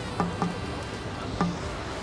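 Soft background music of sparse plucked notes, three of them, two close together near the start and one in the middle, over a faint steady hum.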